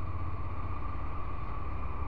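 Honda NC750X motorcycle's 745 cc parallel-twin engine running at a steady speed on the move, with steady wind rush on the microphone; no change in revs.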